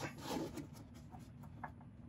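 Faint rubbing and handling noise with a few light ticks, from gloved hands working at the ABS wheel-speed-sensor connector and wiring.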